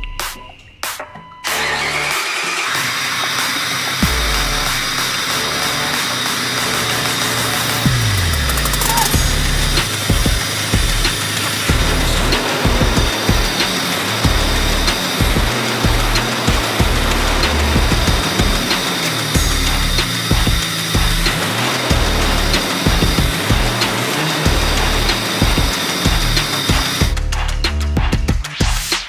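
Jeep Wrangler TJ engine starting about a second and a half in and running steadily for nearly half a minute, its first run since the Jeep was wrecked and left standing, then stopping just before the end. Music with a heavy bass line plays over it.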